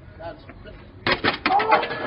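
A quiet start, then about a second in a sudden burst of sharp knocks and clatter, followed by a person's raised voice.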